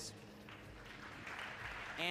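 Audience applauding, a fairly faint, even patter of clapping that builds up from about half a second in.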